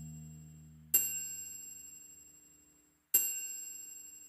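The song's final moments: a low chord dying away, then two bright bell-like chime strikes about two seconds apart, each ringing out and fading.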